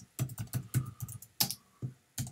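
Typing on a computer keyboard: an uneven run of about eight keystrokes in two seconds.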